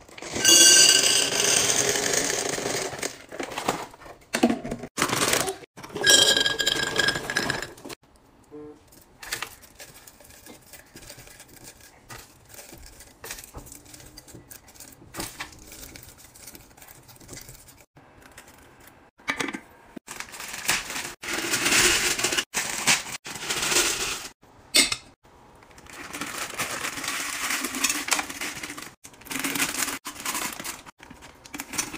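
Peanut M&M's poured from their bag into an empty glass jar, clattering and ringing against the glass in the first seconds, followed by scattered clinks and taps as candies are set into glass jars. In the latter part plastic candy bags rustle in loud bursts and wrapped chocolates drop into a glass jar.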